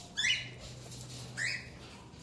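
Parrot giving two short, high calls about a second apart.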